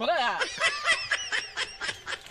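A person's rapid, staccato 'ah-ah-ah' laughing vocalization, several short syllables a second. The syllables jump higher in pitch about halfway through, then fade.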